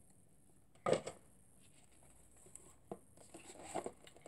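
Paper inserts and a cardboard box being handled. It is mostly quiet, with one short sharp sound about a second in, a click near three seconds and light paper rustling near the end.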